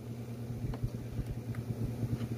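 Chewing of crunchy cheese crackers (White Cheddar Cheez-Its) close to the microphone: soft, irregular crunches over a steady low hum.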